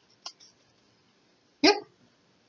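Near quiet with one faint click, then a woman's short spoken "yep" near the end.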